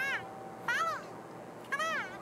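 Three short meow-like calls from a cartoon soundtrack, each rising then falling in pitch, with a faint steady high tone under the first two.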